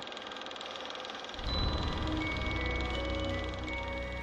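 Film projector running with a rapid, even clatter. About a second in, a low music drone swells in, and long held chime-like tones join it.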